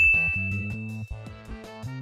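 A single bright chime-like ding, struck just as the title card appears, ringing on one high note and fading out after about a second, over a background music track with a steady bass line.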